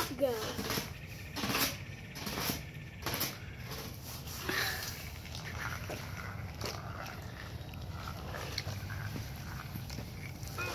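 Two glass marbles rolling down side-by-side lanes of plastic Hot Wheels track, with a handful of scattered clicks and knocks.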